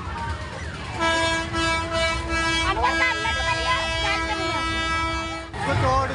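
A horn holding one steady note for about four and a half seconds, then cutting off suddenly, with crowd voices over it.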